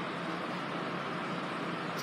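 Steady, even background hiss with no distinct event in it.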